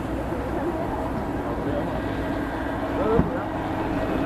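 Outdoor waterside ambience: a steady low rumble of motorboat engines on the canal, with people's voices chattering in the background and a brief bump about three seconds in.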